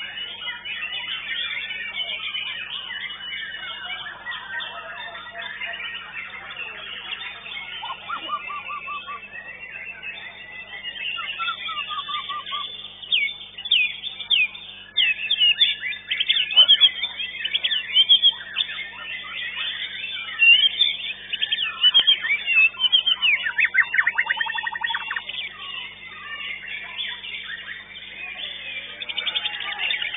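White-rumped shama (murai batu) singing: a varied run of whistles, chirps and rapid trills that grows louder and busier about halfway through, over a steady low hum.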